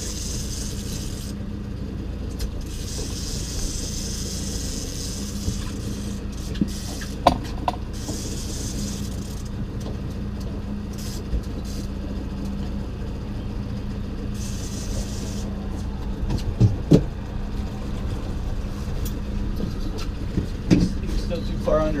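A boat's outboard motor running steadily at low speed, an even low hum, with a hiss of water that comes and goes and a few sharp knocks.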